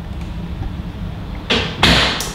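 Low rumble of a handheld camera being moved, with two short hissing swishes near the end.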